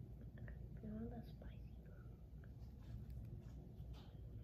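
A faint voice murmuring or whispering briefly about a second in, with scattered small clicks over a steady low hum.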